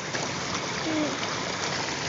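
Steady rushing hiss of running snowmelt water.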